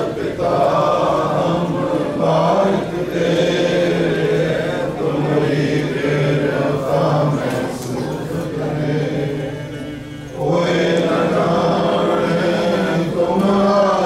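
A congregation of voices chanting together in unison, unaccompanied, in long held phrases. The chant fades about eight seconds in and comes back strongly about two seconds later.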